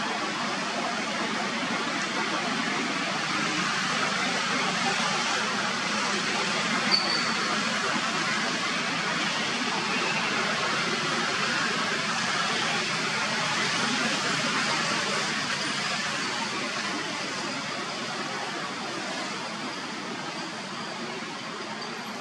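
A steady rushing background noise that fades slightly toward the end, with one short sharp sound about seven seconds in.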